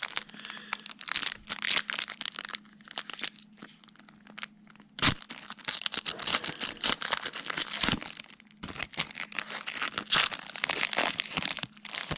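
A foil trading-card pack wrapper being torn open and crinkled by hand, a dense run of irregular crackles with a couple of sharper snaps about five and eight seconds in.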